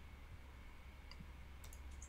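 A few faint computer mouse clicks over a low, steady hum.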